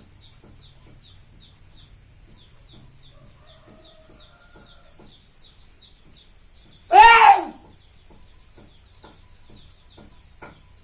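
A single loud bird squawk about seven seconds in, rising then falling in pitch and lasting about half a second, over faint high chirps repeating several times a second.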